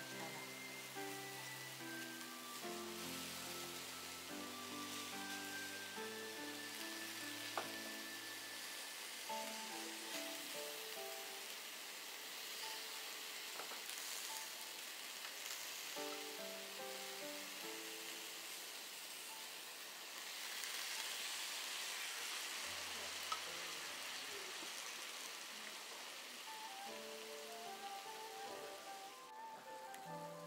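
Sukiyaki cooking in a shallow pan, a steady sizzling hiss that grows a little stronger after about 20 seconds, with slow melodic background music over it.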